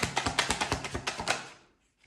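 A deck of tarot cards being shuffled by hand, a rapid run of card-edge clicks and slaps that fades out near the end and then stops.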